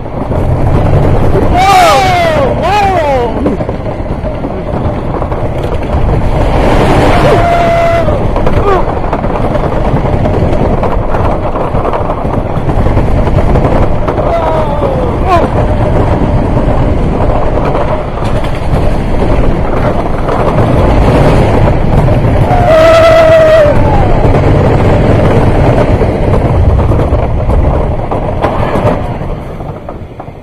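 Wooden roller coaster train running at speed over its track with a steady rumble, riders whooping and screaming four times. The rumble drops away near the end as the train slows into the brake run.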